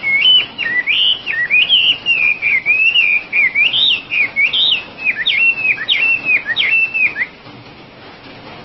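Chinese hwamei singing a loud, continuous run of varied whistled phrases that glide up and down. Near the end it breaks into a few separate, repeated whistled notes and stops abruptly a little after seven seconds in.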